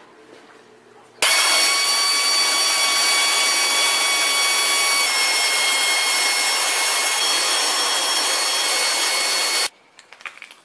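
A power tool running without pause for about eight seconds: a loud hiss with a high whine. It starts abruptly about a second in, its whine shifts slightly in pitch about halfway, and it cuts off suddenly near the end.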